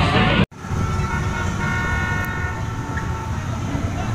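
Street traffic noise with a horn sounding one long, steady note for about two seconds, after a brief crowd din is cut off half a second in.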